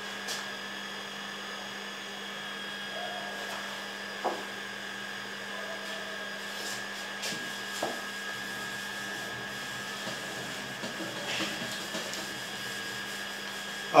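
A whiteboard eraser wiping marker off a whiteboard: faint rubbing with a few soft knocks, over a steady hum in the room.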